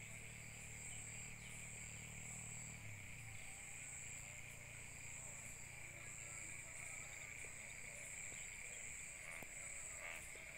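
Insects chirring steadily in a continuous high drone with faint regular pulses. Under it runs a low hum that drops in pitch about three seconds in.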